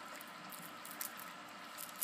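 Quiet room tone: a faint steady hiss, with one soft tick about a second in and a few small handling clicks near the end as fingers hold the plant.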